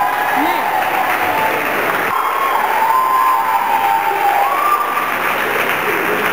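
Audience applauding and cheering, with voices whooping in long, wavering calls over the clapping.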